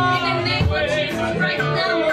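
Live church worship music: a woman sings lead into a microphone, with backing singers and a band with drums and guitar.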